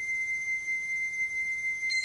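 A single high, steady tone held as part of a sparse ambient music score. Just before the end, several more high tones come in on top of it.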